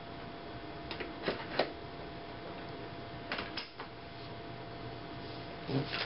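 A few light clicks and knocks as a beach cart's inflatable tire is slid onto its metal axle and the wheel hub and frame handled, in two small groups about a second in and about three seconds in.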